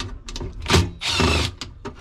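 Cordless drill-driver run briefly, about a second in, backing a screw out of a refrigerator's evaporator fan cover, with clicks and knocks of the bit and metal panel around it.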